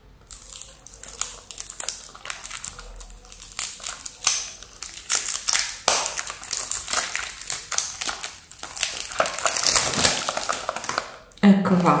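Cellophane wrap crinkling and tearing as it is pulled off a small cardboard cosmetics box by hand: a long run of irregular crackles.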